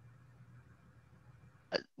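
Near quiet room tone on a video call with a faint low hum, broken near the end by one short, sharp vocal sound from a participant just before speech.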